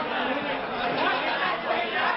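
Crowd chatter: many people talking over one another at once in a large hall.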